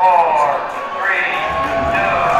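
Spacey gliding tones from a live psychedelic rock band's stage sound: swoops falling in pitch, then one rising sweep, with a low rumbling drone coming in about one and a half seconds in.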